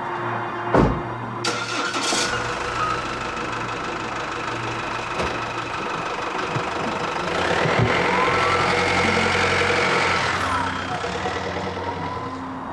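A thud about a second in, then a Jeep Wrangler SUV's engine running as the vehicle pulls away and drives off, loudest about eight to ten seconds in and fading near the end, with background music under it.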